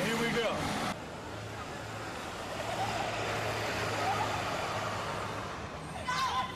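Outdoor home-video audio: a man's voice for about the first second, then the sound drops abruptly to a steady background rumble with a constant low hum and faint distant voices.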